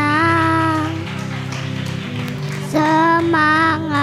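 A young child singing through a microphone and PA over instrumental accompaniment: one held note in the first second, a pause with only the accompaniment, then another sung phrase near the end.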